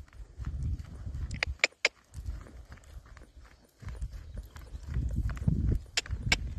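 Hoofbeats of a horse trotting on the lunge over a loose chip arena surface, with a few sharp clicks a little before two seconds in.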